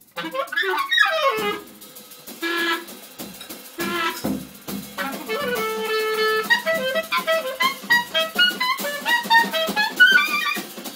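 Live free-jazz duo of clarinet and drum kit. The clarinet plays a falling run about a second in, a few short held notes, then quick runs of notes in the second half, over scattered drum and cymbal strikes.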